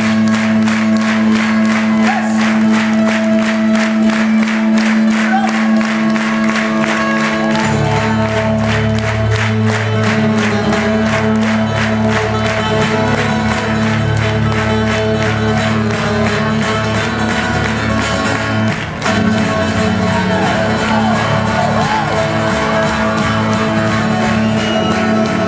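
Live acoustic band music in an instrumental passage: fast, even strummed rhythm over steady held low notes, the low note changing about a third of the way in.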